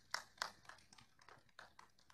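A quiet run of irregular sharp clicks, several a second, in a small room.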